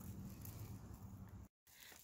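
Near silence: faint outdoor background with a low steady hum, broken by a moment of complete silence about one and a half seconds in.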